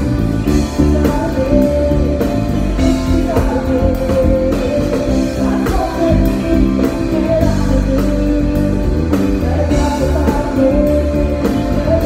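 Live band music: a singer's vocal line over electric bass guitar, drums and keyboards, with a steady beat and the bass prominent in the mix.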